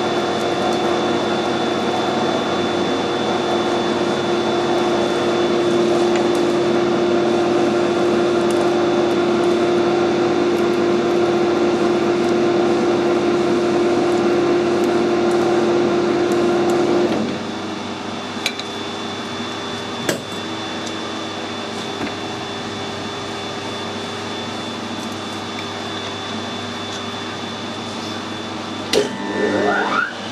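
Metal lathe running steadily as an 8 mm die cuts a thread on a steel shaft. About 17 seconds in, the running drops noticeably quieter and carries on at the lower level, with a few light clicks and a brief rise and fall in pitch near the end.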